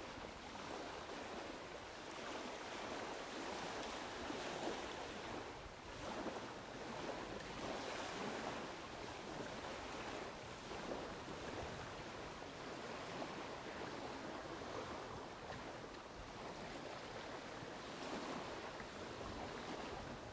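Wind and small river waves lapping at the shore: a steady soft wash that swells and eases every second or two.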